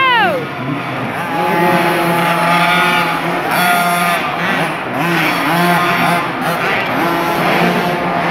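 Small 50cc youth motocross bike engines racing on a dirt track. A nearby bike's high engine note drops sharply just at the start as it passes and backs off. After that, several engines rise and fall in pitch further away, overlapping as the riders work the throttle around the course.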